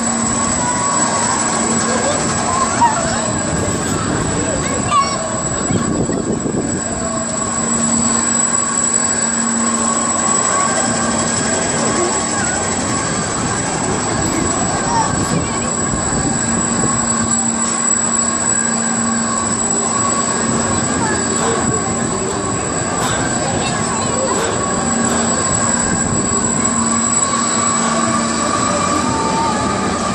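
Spinning, tilting disc amusement ride in motion: a steady mechanical hum and whine from its machinery, with voices of riders and people around mixed in.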